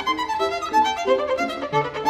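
Violin playing a fast tarantella passage of rapid, short notes, with piano accompaniment sounding lower notes beneath.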